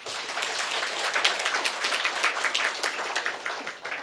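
Audience applauding: dense, even clapping that starts at once and dies away near the end.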